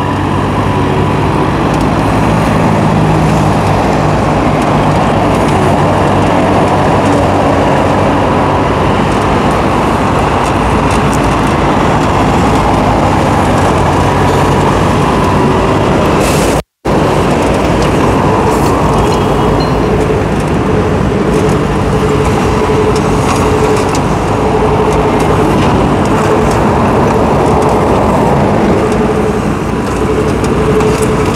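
Hitachi EX15-1 mini excavator's diesel engine running steadily under load while the arm digs dirt. The sound cuts out for an instant a little past halfway: a glitch in the recording.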